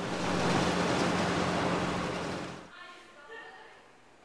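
Steady road and wind noise inside a moving car, with a low engine hum under it, cutting off suddenly about two-thirds of the way through. After it, faint voices echo in a large hall.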